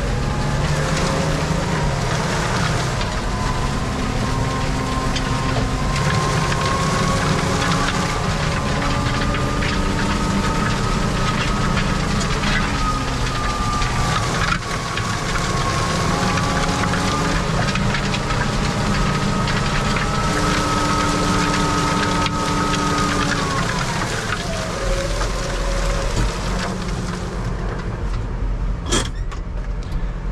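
New Holland tractor's diesel engine running under load, heard from inside the cab while it pulls a disc harrow through the field, with a drivetrain whine that wavers slightly in pitch. About 24 seconds in, the whine and engine note drop as the tractor slows, and a few sharp clicks come near the end.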